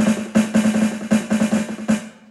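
Yamaha electronic drum kit: a fast, even run of snare hits on the snare pad, played as a quick roll.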